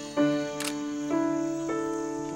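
Live acoustic ensemble music: slow, held notes entering one after another, three new notes in two seconds. A single sharp camera-shutter click sounds just over half a second in.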